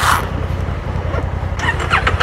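A motorcycle engine idling steadily with a low, even hum. There is a brief rustle at the start and a short rising squeak near the end.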